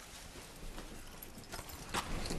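Faint irregular knocks and shuffles of people moving about on a hard floor, with a couple of sharper clicks near the end.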